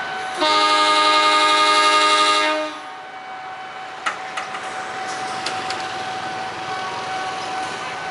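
Diesel-electric locomotive horn (Indonesian CC 201 class) sounding one long blast of about two seconds, a chord of several tones, starting about half a second in.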